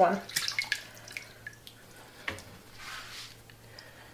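Wet potato slices being lifted out of a pot of water, with water dripping off them and small scattered ticks and splashes as the slices are handled.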